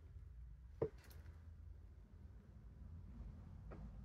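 Quiet room with a low, steady rumble. A single sharp knock comes about a second in, and a fainter click comes near the end.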